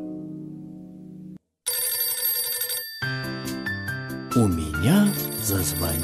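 The last notes of a plucked harp-like tune die away, and after a brief silence a telephone bell rings. About three seconds in, bouncy children's music starts up under the ringing.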